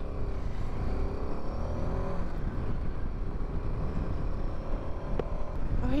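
Royal Enfield Himalayan 450's single-cylinder engine running on the move. Its note rises over the first two seconds as the bike picks up speed, over a steady low rumble of riding noise.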